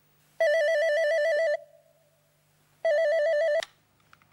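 Corded landline telephone's electronic ringer sounding twice, a fast warbling trill. The second ring is cut short by a click as the handset is lifted to answer.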